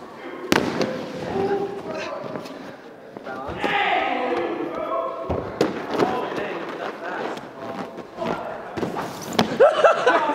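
Several dull thuds as a person lands on a padded airbag mat and clambers over foam blocks, with people talking and calling out in the background.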